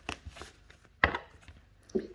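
Tarot cards being handled on a table: a few short, sharp slaps, the loudest about a second in.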